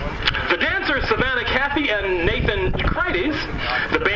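An announcer speaking over the stadium loudspeakers, reading the band's introduction.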